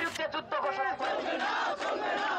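Protest slogans shouted by a man through a handheld megaphone, with a crowd of protesters shouting along.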